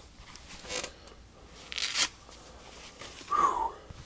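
Leg compression wrap being pulled off: short scratchy rips of the fabric straps, the loudest about two seconds in, then a brief squeaky creak near the end.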